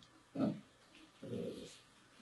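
Speech only: a man says a short 'hein', then gives a quieter murmured hesitation sound, with pauses either side.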